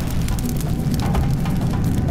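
Cartoon fire sound effect: a steady, dense low rumble of flames with fine crackling, under background music.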